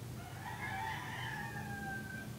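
A rooster crowing once, one long call that rises and then falls away, drawn out at the end, over a steady low hum.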